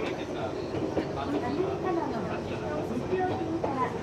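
Electric commuter train running along the track, heard from inside the carriage, with people's voices over it.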